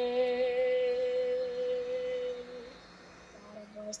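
A young singer's voice holding one long, steady sung note that stops about two and a half seconds in, heard through computer speakers.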